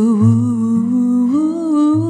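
Female jazz vocalist holding one long note with vibrato, stepping up in pitch about halfway through, over soft acoustic guitar chords.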